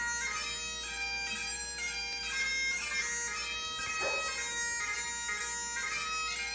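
Highland bagpipe music: a chanter melody of changing notes over steady drones.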